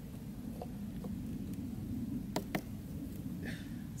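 Two sharp clicks about two and a half seconds in, with fainter clicks before them, from a hand-held launch release trigger being worked, over a low steady background rumble. There is no launch rush of water and air: the water rocket plane fails to fire.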